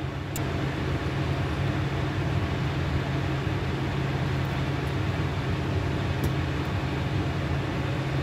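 Water poured in a steady stream from a glass jar into a small glass mason jar, over a steady low hum.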